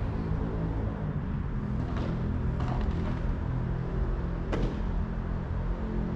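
Padel ball being struck by paddles and bouncing during a rally: a few sharp pops about two to three seconds in and a louder one about four and a half seconds in, over a steady low background.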